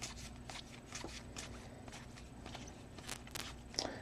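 Faint, irregular soft clicks and slides of baseball trading cards being thumbed through a stack in the hands, one card pushed over the next.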